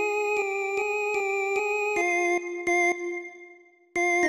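Yamaha PSR-series arranger keyboard playing a slow single-line melody in F minor, one note at a time over a held lower note, about seven even notes in a row. The line breaks off after about two and a half seconds, one short note follows, and the sound dies away near the end.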